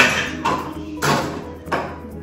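Knocks from objects handled close to the microphone: one sharp knock at the very start, then three noisier knocks or scrapes about every half second, with music playing underneath.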